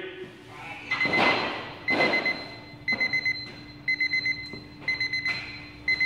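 Electronic workout timer alarm beeping in groups of four quick high beeps, repeating about once a second: the signal that the timed set has run out. A few thuds come in the first three seconds.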